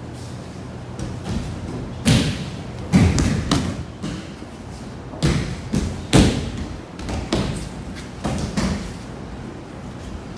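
Repeated irregular thuds of bodies landing on tatami mats as aikido students are thrown and take breakfalls during paired practice, several people falling at different moments.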